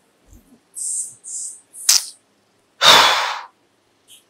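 A woman's breath sounds of frustration: a few short breathy hisses, a sharp click, then a loud exasperated sigh about three seconds in.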